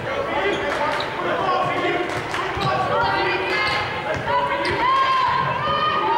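Basketball dribbled on a hardwood court, each bounce a sharp knock, over a steady mix of players' calls and spectators' voices, with short high squeaks and calls crowding in over the last two seconds.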